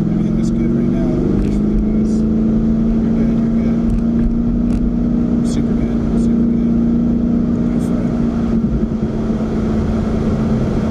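Car engine heard from inside the cabin: it rises in pitch over the first second, then holds steady revs, over a loud rumble of road and wind noise.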